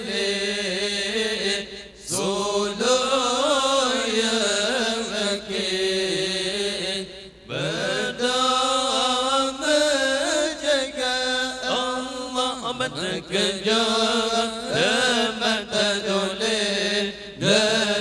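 A man reciting the Quran aloud in a melodic, ornamented chant through a microphone and loudspeakers, in long drawn-out phrases with short pauses for breath about two seconds in and again about seven and a half seconds in.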